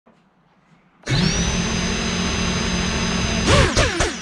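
Electric motors starting abruptly about a second in, their high whine rising briefly and then holding steady over a loud rushing noise. Near the end the whine stops and a voice breaks in.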